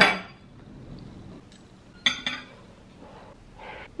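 A metal fork clinks once against a plate about two seconds in, during a bite of food.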